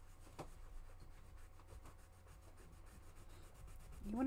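Faint rubbing of a cloth over a textured paper clay panel, wiping wet paint off the raised surface to bring out the contrast, over a steady low hum.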